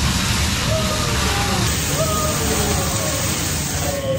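Hot oil poured from a ladle onto a bowl of fire ramen, sizzling and catching fire in a steady hiss that sets in at once.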